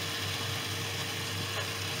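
Curry masala frying in a pan: a steady sizzle with faint crackle over a low, steady hum.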